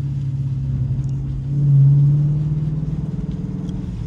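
Dodge Challenger R/T's 5.7-litre Hemi V8 heard from inside the cabin, pulling steadily as the car gains speed gently. Its deep drone swells louder about a second and a half in, then eases back.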